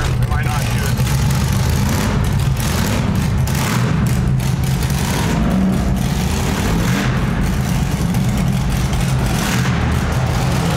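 V8 engine of an LS-swapped Chevy S10 running steadily at low revs, heard from inside the cab while the truck creeps through a concrete tunnel.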